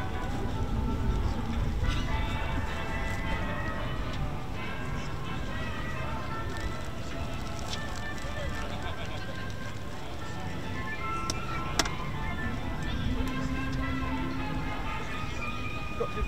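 Music with voices in the background, over a steady low rumble.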